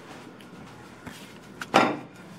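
A few faint clicks and taps of cutlery and a cake tray on a table top.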